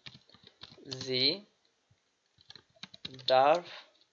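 Computer keyboard keys clicking in short runs as words are typed, with a voice speaking briefly twice, about a second in and near the end.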